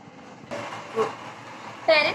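Low background hiss of room noise that steps up about half a second in, as a new recording begins. There is a brief vocal sound around one second in, and a woman starts speaking near the end.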